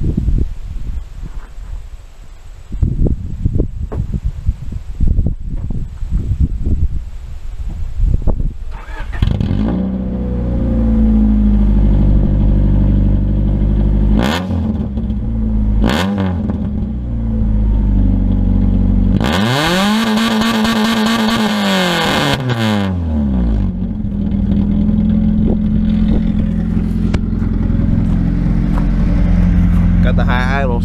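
1992 Honda Prelude's H23A1 four-cylinder heard at the tailpipe. For several seconds there is only wind buffeting the microphone. The engine starts about nine seconds in and settles into a steady idle, with two short throttle blips. A longer rev climbs and falls back to idle about two-thirds of the way through.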